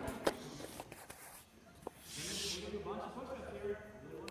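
Indistinct voices in a large gym, with a few short sharp knocks and a brief hiss around the middle.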